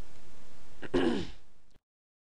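A single short cough about a second in, over faint steady hiss, and then the sound cuts off abruptly to silence.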